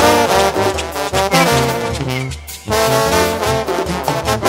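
Live Mexican banda music: a brass section of trumpets and trombones playing a melody over steady low bass notes. About two and a half seconds in, the band briefly breaks off, then comes back in.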